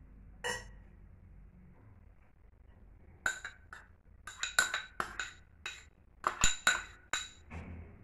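A metal spoon clinking and tapping against small ceramic bowls as chopped onion is scraped out onto a pasta salad. There is a single clink early, then a quick run of sharp, ringing clinks through the second half.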